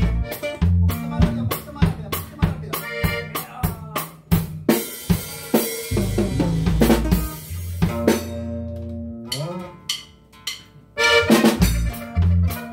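A norteño band playing live in a small room: drum kit with snare and rimshot hits over electric bass, accordion and bajo sexto. Past the middle a bass note slides upward and the playing thins out briefly, then the full band comes back in near the end.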